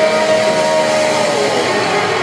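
Loud live thrash metal band heard from the balcony: a long held note that bends down about a second and a half in, then a dense, noisy wash of distorted guitars.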